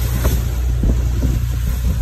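Boat's engine running steadily underway, a low drone, with wind buffeting the microphone.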